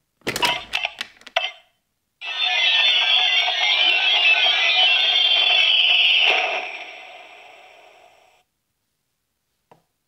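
Plastic clicks as the two buttons on top of a Minions Mega Transformation Chamber toy are pressed. A couple of seconds later its built-in speaker plays a loud electronic transformation sound effect with wavering beeping tones for about six seconds, fading out over its last two seconds.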